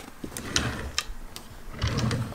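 A few light clicks and rustles, then a dresser drawer pulled open near the end.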